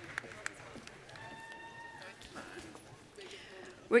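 Quiet hall room tone with a few light taps in the first half second and a faint held tone about a second in. A voice starts speaking right at the end.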